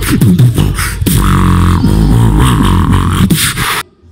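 Human beatboxing through a microphone and PA: a deep, heavy bass line whose pitch bends and wavers, cut with sharp kick- and snare-like clicks. It stops abruptly just before the end.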